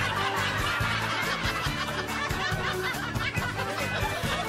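Laugh track of many people chuckling and snickering together over light background music with a steady beat.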